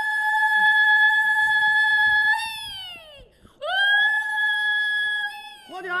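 A woman's zaghrouta, the high-pitched trilled ululation of celebration, given twice: the first call is held about two and a half seconds and slides down in pitch, and the second starts about halfway through and also falls away near the end.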